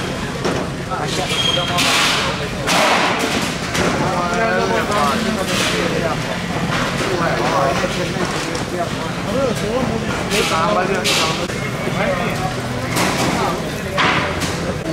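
Busy fish-market chatter: several voices talking and calling over one another. Several short bursts of hiss cut through it, from a water spray misting the mussels on the stall.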